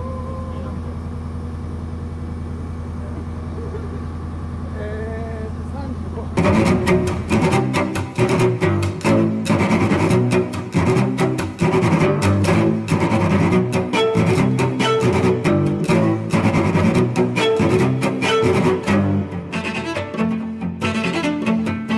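A fire truck's engine idling with a steady low hum, with faint voices over it. About six seconds in, background music with a busy, rhythmic beat cuts in abruptly and runs on.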